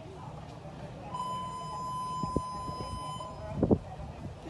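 A show-jumping arena's electronic buzzer sounds one steady, even tone for about two seconds: the judge's signal for the rider to begin the round. A couple of dull thumps follow near the end.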